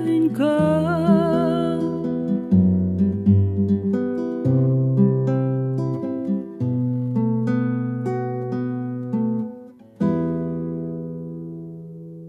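Acoustic guitar playing the outro of a song, with a woman's last sung note held, wavering, over the first two seconds. Then plucked notes and chords, and a final chord struck about ten seconds in that rings on and fades.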